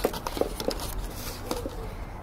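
Stiff paper being handled and folded by hand: a handful of short crinkles and taps, the strongest near the start and about half a second in.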